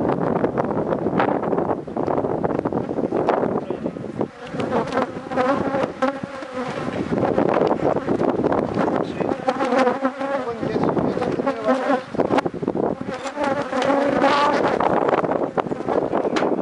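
Honeybees buzzing around an opened hive as its comb frames are worked: a dense, continuous hum with several louder, wavering buzzes rising out of it.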